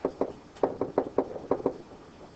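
Pen or stylus tapping and knocking against the writing surface of an interactive whiteboard while a word is handwritten: about eight short, irregular taps in the first second and a half or so.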